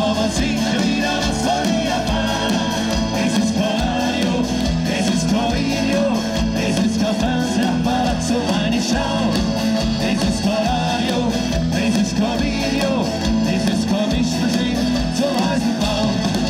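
Live rock band playing: drums, guitars and a male lead singer, amplified through a stage PA.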